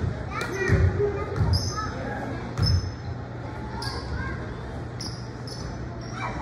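Basketball bouncing on a hardwood gym floor, about three dribbles in the first three seconds, in a large echoing gym with voices talking in the background.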